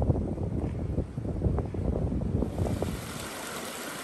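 Wind buffeting the microphone in low, uneven gusts. About two and a half seconds in it gives way to the steady rush of a small creek running over rocks.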